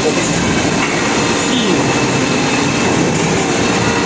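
Steady, loud machine noise from a plastic injection moulding machine and its conveyor belt running on a factory floor.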